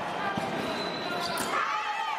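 Sabre fencing exchange on a piste: shoes squeaking and a stamp on the floor as the fencers close, in a large echoing hall.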